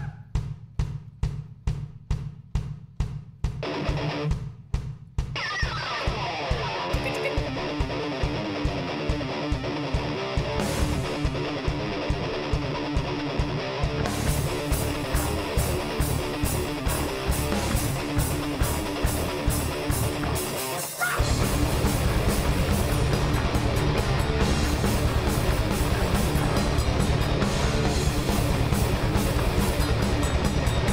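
Heavy metal band playing live: a steady kick-drum pulse of about three beats a second, then electric guitars, bass and drums come in together about five seconds in. After a brief break near twenty-one seconds the band comes back in louder.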